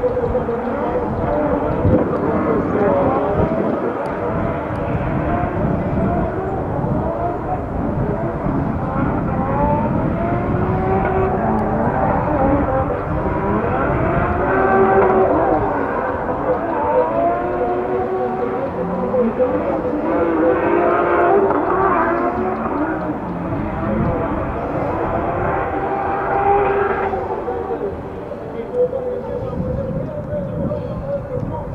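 Two drift cars running in tandem, their engines revving hard and rising and falling in pitch again and again as they slide, with tyres squealing underneath. Near the end the revving drops away.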